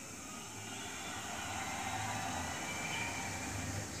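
Steady low background noise: an even hiss with a low hum underneath, slowly growing a little louder.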